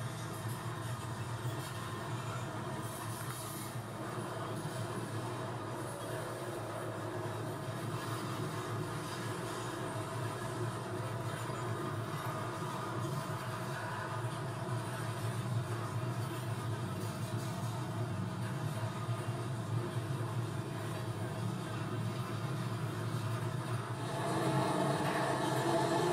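Steady rumble and wheel noise of a freight train of hopper cars rolling past, with a constant drone in it, getting a little louder near the end.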